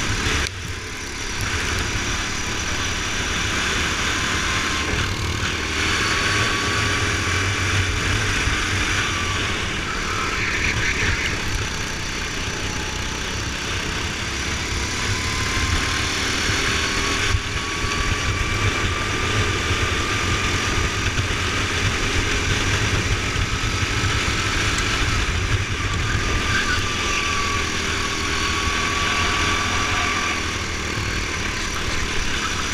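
Go-kart engine running at speed, heard from onboard, its pitch rising and falling slowly as the kart accelerates and slows through the corners, over a low wind rumble on the microphone.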